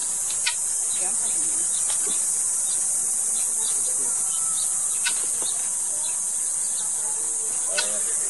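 Steady high-pitched drone of an insect chorus, with faint distant voices and a few light clicks.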